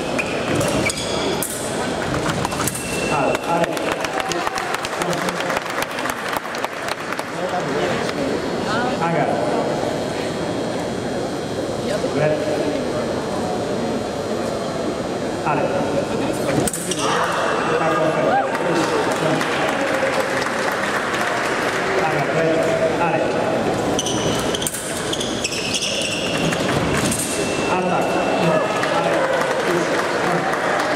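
Voices of spectators and coaches in a large hall, with an electronic fencing scoring machine's steady beep sounding several times as touches register, and scattered sharp clicks of sabre blades and footwork.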